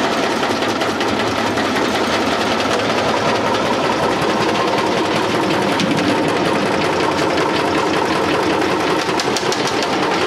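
Maggot shaker machine running: a steady, fast mechanical rattle of the vibrating sieve tray as maggots and sawdust pour through it, shaking the sawdust out of the bait.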